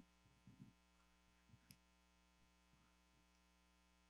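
Near silence: a steady electrical mains hum on the sound system, with a few faint soft knocks in the first couple of seconds.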